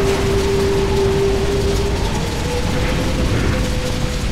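Cinematic logo-intro sound effects for shattering stone letters: a dense, grainy rumble of crumbling debris under a held tone that steps up in pitch about two and a half seconds in.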